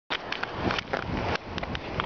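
Outdoor rumble with a string of irregular knocks and rustles from a handheld camera being handled as the recording starts.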